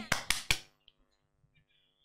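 Three quick, sharp smacks within about half a second, then near silence.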